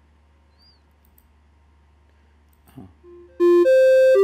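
The micro:bit MakeCode simulator plays a melody of electronic beeping tones. The notes step up and down in pitch and start about three seconds in, after near silence.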